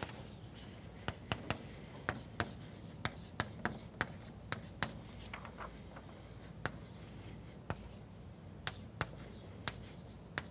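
Chalk writing on a blackboard: irregular sharp taps and short scrapes as symbols are written, a click every half second or so, thickest in the first half.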